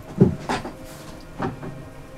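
Three dull knocks of things being handled and moved while a room is rummaged through. The first, just after the start, is the loudest, followed by a smaller one about half a second in and another near the end.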